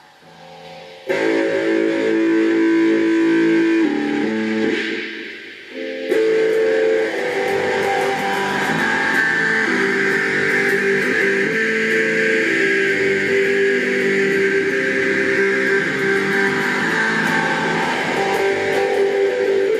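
Stratocaster-style electric guitar played: a chord rings out about a second in, changes and fades, then from about six seconds steady strummed chords carry on.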